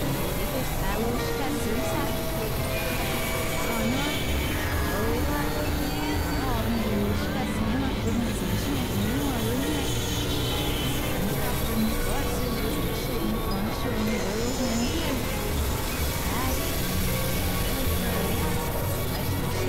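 Experimental electronic noise music: a dense, steady wash of layered synthesizer drones and noise, with wavering tones that slide up and down in pitch.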